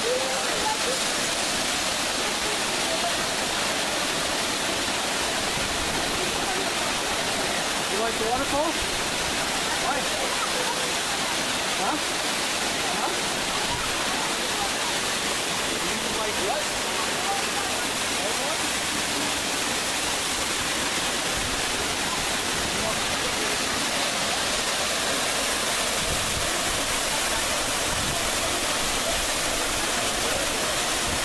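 Rancheria Falls, a waterfall cascading over rock, giving a steady, unbroken rush of falling water.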